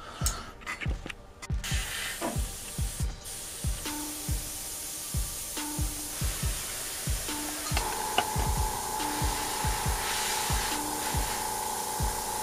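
Airbrush spraying paint: a steady hiss of air that starts about two seconds in, over background music with a steady beat.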